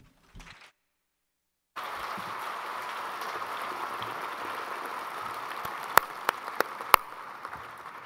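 Audience applause. It begins about two seconds in after a moment of dead silence and runs steadily, with a few sharp single claps standing out near the end as it starts to fade.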